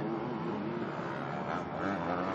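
Engines of three motocross bikes racing close together, their pitch rising and falling as the riders work the throttle through the turns.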